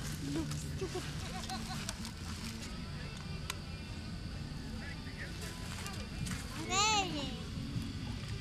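Faint voices over a steady low hum, with one sharp tick partway through. Near the end a child calls out "No. No."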